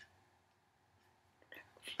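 Near silence for most of the moment, then near the end a woman's short, breathy, whisper-like vocal sound.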